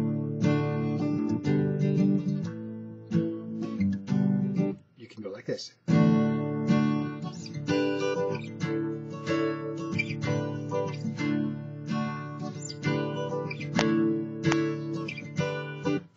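Steel-string acoustic guitar strummed, playing a D-shape chord pattern slid up the neck to give D, G and A chords, with a short break about five seconds in.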